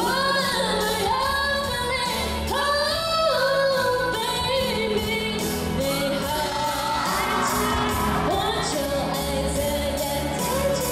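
Female pop singer singing live into a handheld microphone over recorded pop accompaniment with a steady beat, carried by PA loudspeakers.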